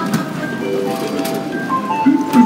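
Electronic chime tones from a JAL boarding gate reader during priority boarding. Short chords of several steady notes sound again and again, and a higher tone comes in near the end.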